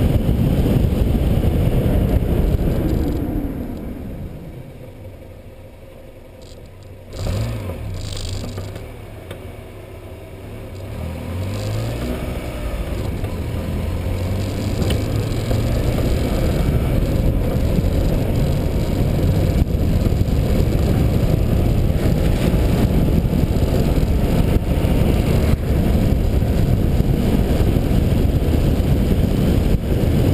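Wind and road noise rushing over the microphone of a camera riding on a moving vehicle. The noise dies away a few seconds in as the vehicle slows, there is a single knock at about seven seconds followed by a low hum, and then the noise builds up again as it picks up speed.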